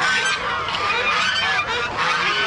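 A flock of domestic geese honking, many short calls overlapping without a break, as the birds are let out of a cage into a pond.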